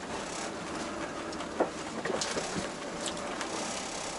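Inside the cab of a Tata Daewoo Prima truck rolling slowly: steady engine and road noise, with a few faint clicks and knocks.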